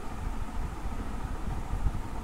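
Steady low rumbling background noise, uneven but without any clear event or tone, as picked up by an open call microphone.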